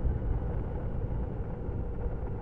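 Steady low rumble of a motorcycle riding along a road at an even speed, engine and wind noise blended together.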